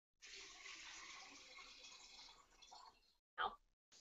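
Faint running water from a kitchen tap, a steady hiss that stops about three seconds in, followed by a brief fragment of a voice.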